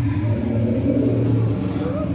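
Loud, low growl from the dinosaur exhibit's sound system. It starts suddenly and holds steady for about a second and a half.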